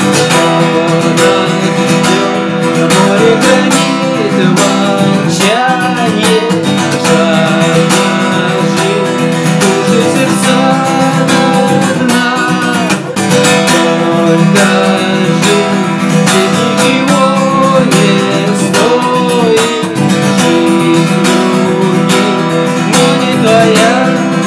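Fender cutaway acoustic guitar strummed steadily in a rock song accompaniment, with a man's voice carrying a wordless melody over the chords at times.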